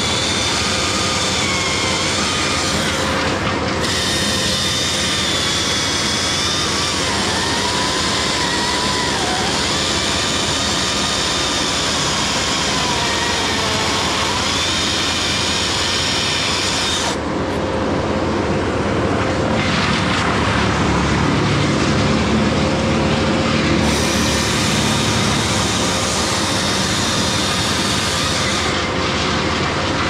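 Husqvarna T542i top-handle two-stroke chainsaw running at high revs while cutting into a poplar trunk, its pitch wavering under load. Past the middle it grows a little louder and deeper for several seconds.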